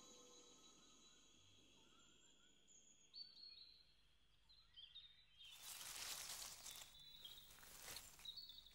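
Very faint forest ambience, close to silence, with a few soft, short bird chirps, then a soft rustling hiss from about five and a half seconds in.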